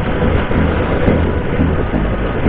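Wind buffeting an action camera's microphone on a moving motorcycle, with the bike's engine and traffic noise underneath: a loud, steady rush with a heavy, fluttering low rumble.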